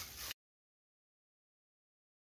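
Near silence: a faint trail of room noise that cuts off a third of a second in, after which the audio track is completely silent.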